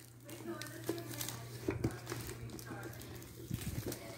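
Faint children's voices in the background over a steady low hum, with a few light knocks and rustles of handling.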